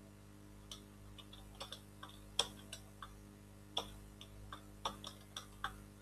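Computer keyboard keys tapped about a dozen times at an uneven typing pace, faint, over a low steady electrical hum.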